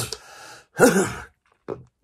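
A man sighs with a breathy exhale, then makes a short voiced sound about a second in.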